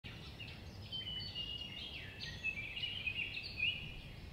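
Several songbirds singing together, a dense run of short whistled and chirping notes that overlap, over a low steady rumble.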